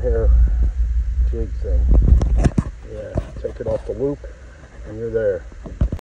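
A man's voice talking in short phrases, over a low rumble that cuts off about two and a half seconds in, with a few sharp clicks around that point.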